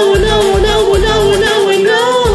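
A woman singing a held, wavering wordless vocal line over a pop karaoke backing track, with a bass that pulses on and off about twice a second.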